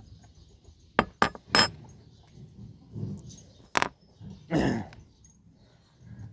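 Sharp metallic clinks and clicks of a chainsaw's chain and guide bar being handled while the chain is taken off: three quick clinks about a second in and another a little before four seconds. A brief drawn-out sound follows soon after.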